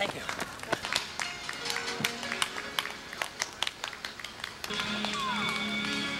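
Street-race soundtrack: a stream of irregular sharp taps mixed with voices. Near the end, music with long held notes comes in and carries on.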